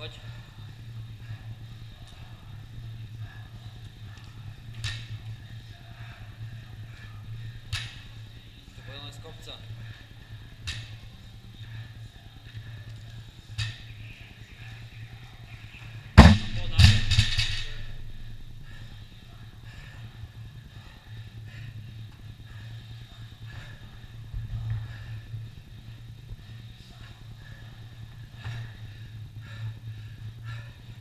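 A steady low hum with a few light knocks scattered through, and one loud sharp bang about sixteen seconds in, followed by a short rattle.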